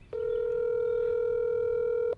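Telephone ringback tone from a smartphone's speaker: one steady tone about two seconds long, the call ringing at the other end without being answered.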